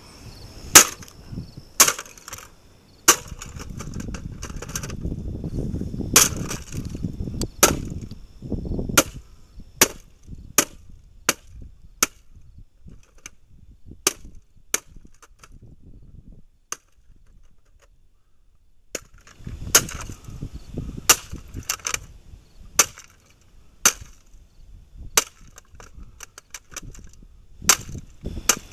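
A homemade wooden club with a heavy bolt through it striking an old boombox again and again, sharp cracking blows coming about once a second, with a short pause about halfway through. The boombox casing is being smashed apart.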